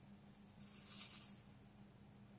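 Brief faint hiss of rosin flux sizzling under a hot soldering iron tip on the solder seam of copper-foiled glass, over a faint steady hum.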